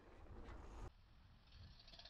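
Faint noise of a mountain bike rolling along a dirt trail, a low rumble that drops off suddenly about a second in to a quieter, duller hiss.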